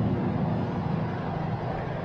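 Steady low rumble and hum of an airport terminal, with a few held low tones that thin out partway through.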